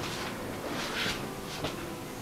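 Brass gua sha scraper stroking along oiled skin: a few soft swishes, the strongest about a second in, with a short click just after halfway.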